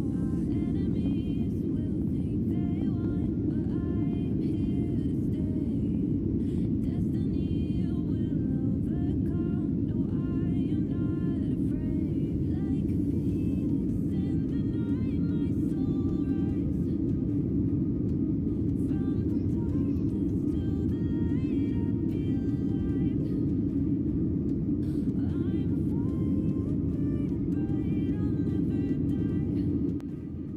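Steady loud rumble of an airliner's jet engines and airflow heard from inside the cabin during the takeoff roll and initial climb. Background music with a melody plays over it.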